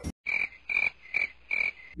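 Four short, evenly spaced animal calls, about two a second, from an edited-in sound effect played in a gap where the talk and music stop.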